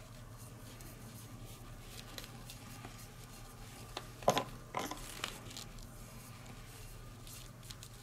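Quiet handling sounds of brush painting on a model base: faint scratches and clicks, with a couple of louder short knocks about halfway through, over a steady low hum.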